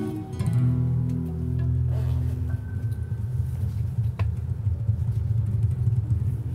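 Acoustic guitar and upright piano playing a slow instrumental passage together, with sustained low notes.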